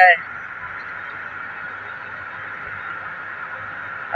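Steady cabin noise of a moving car at highway speed: an even hiss with a faint low hum beneath, unchanging throughout.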